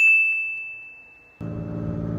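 A single bright ding sound effect that rings and fades away over about a second and a half while the rest of the sound is muted. A low engine idle comes back in near the end.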